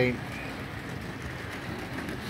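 Model railway pannier tank locomotive running along the track with its train: a steady rolling noise of the motor and wheels on the rails.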